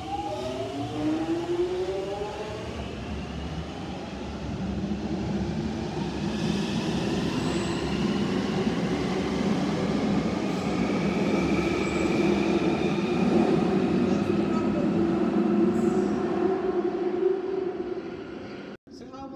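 London Underground Jubilee line 1996 Stock train pulling out of the station. Its traction motors whine upward in pitch over the first few seconds, then the run of the train along the rails builds into a steady rumble that grows louder until near the end.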